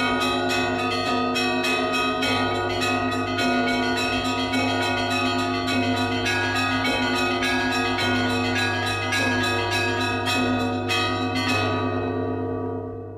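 Church bells ringing: quick strikes of smaller bells, about four a second, over a steady low bell tone, in the style of Russian Orthodox bell-ringing.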